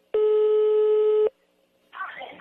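A single steady telephone ringback tone, about a second long and cut off sharply, heard over a phone line: the call being put through to another line is ringing.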